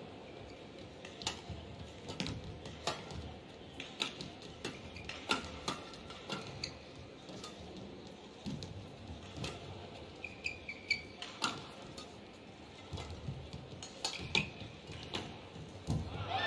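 A badminton rally: sharp cracks of rackets striking the shuttlecock back and forth, irregularly spaced, mixed with the players' footwork on the court, over a low, steady arena background.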